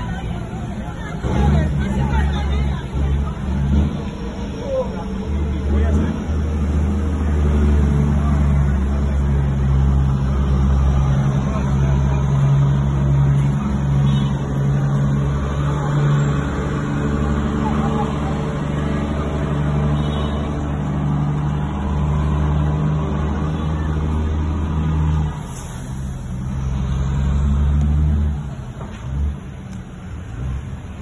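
Peterbilt dump truck's diesel engine running with a steady deep drone as it pulls its trailer, heard from inside a car following close behind. The engine note drops off briefly about 25 seconds in, comes back, and falls away again near the end.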